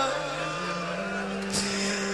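A steady low drone holds through a gap in the chanting, with a short breath-like hiss about one and a half seconds in.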